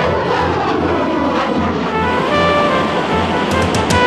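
Background music over the rushing roar of a jet aircraft passing by, the roar sweeping down in pitch over the first couple of seconds.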